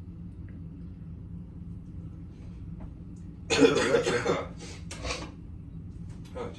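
A man coughing: one loud, harsh cough a little past halfway, followed by two smaller coughs.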